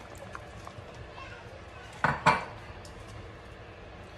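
Baby carrots being added to a cooking pot, with two quick clanks against the pot about two seconds in over a low steady background.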